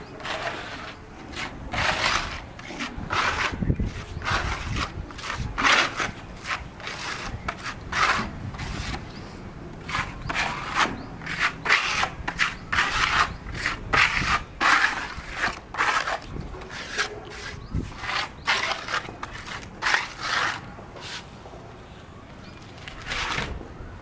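Hand trowels scraping and spreading grey waterproofing paste over concrete roof tiles: a long run of short scraping strokes, roughly one or two a second, uneven in strength.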